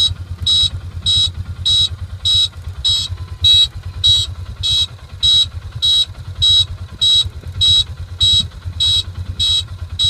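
An electronic beeper sounding short, high beeps at an even pace of nearly two a second, over the low rumble of an idling vehicle engine.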